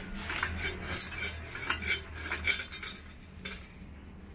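Shrine bell (suzu) rung by shaking its red-and-white rope: a quick, uneven run of metallic rattling jingles that dies away about three and a half seconds in.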